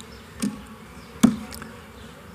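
A pause in a talk heard through a microphone: a faint steady background hum with two short clicks, the second louder.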